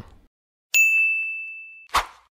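A notification-bell ding sound effect from a subscribe-button animation: one bright, high ding that starts sharply about three-quarters of a second in and fades away over about a second. A brief burst of noise follows right at the end.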